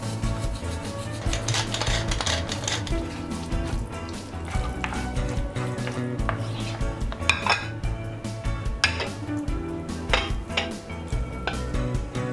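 Wooden spoon stirring a thick, creamy dip in a nonstick frying pan, scraping and knocking against the pan, with several sharp knocks spread through. Background music runs underneath.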